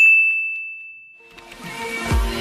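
A single bright, bell-like ding that strikes as the music cuts off and rings on one high tone, fading over about a second and a half; faint music comes in near the end.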